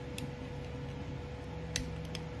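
Two light clicks, one just after the start and one near the end, as a metal tool pries at the seam of a small plastic LED controller housing to open it, over a steady faint hum.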